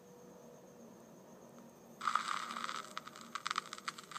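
Faint steady electrical hum, then about halfway through a louder scratchy, crackling noise with many sharp clicks starts suddenly.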